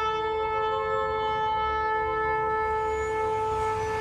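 A single long horn blast held steady on one note over a low rumble.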